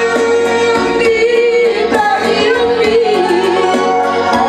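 A woman singing a sad Batak song into a microphone, amplified through loudspeakers over instrumental accompaniment. She holds long notes, and the pitch wavers and slides down near the end.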